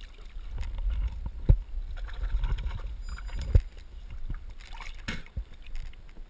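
Knocks and handling bumps on the plastic hull of a sit-on-top kayak: two sharp thumps, about a second and a half in and again two seconds later, over a low rumble of movement against the hull.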